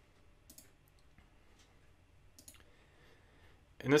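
Faint computer mouse clicks, a few scattered through the first two and a half seconds of a quiet pause.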